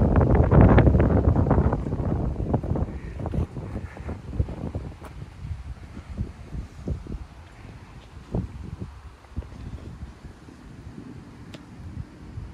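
Wind buffeting the microphone, a rough low rumble that is loudest in the first two seconds and then dies down to weaker gusts, with scattered soft knocks.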